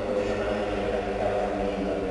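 A man's voice chanting the liturgical prayers of the Mass, drawn out by the church's reverberation.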